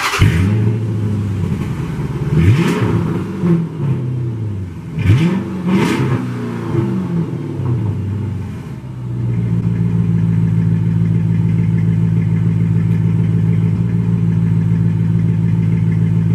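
A car engine starting up, blipped in two quick revs that rise and fall back, about two and a half and five seconds in, then settling into a steady idle from a little past halfway.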